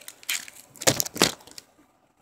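Foil Pokémon booster pack wrapper crinkling as it is handled, in a few short, sharp rustles, the loudest around one second in.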